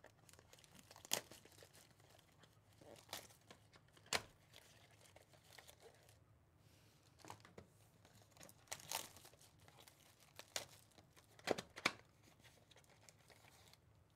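Clear plastic shrink wrap being torn and peeled off a trading-card hobby box and crumpled, heard as faint scattered crinkles and short rips, the loudest a few sharp crackles near the middle and toward the end.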